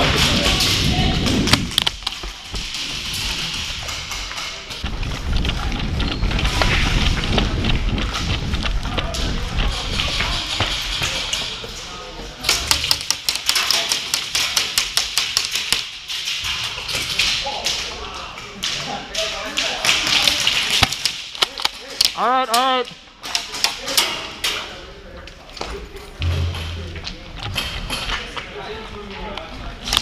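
Airsoft game in a large echoing indoor arena: a steady run of sharp taps and thuds, thickest in the middle, from airsoft guns firing and BBs hitting plywood walls, with voices calling out.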